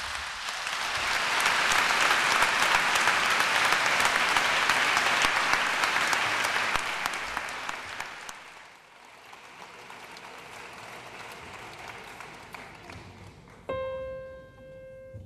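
Audience applauding, building over the first couple of seconds and dying away past the middle into quieter hall noise. Just before the end a single grand piano note is struck and rings on.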